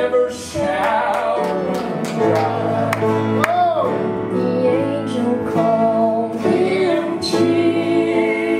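A woman singing a southern gospel song, accompanied by piano and acoustic guitars.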